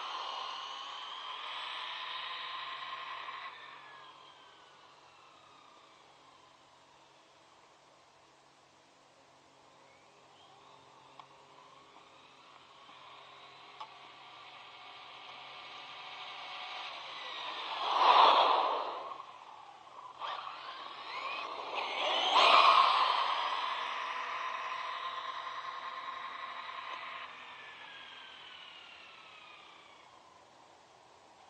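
ZD Racing Pirates 2 MT8 RC monster truck's electric motor whining on a full-speed run, fading as the truck drives away and rising again as it comes back. It passes close twice, a little past the middle and again a few seconds later, each time loud with the pitch sweeping down as it goes by.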